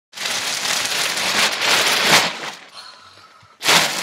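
Black plastic trash bag rustling and crinkling as it is handled, loud for about two seconds, then quieter, with another short crinkle near the end.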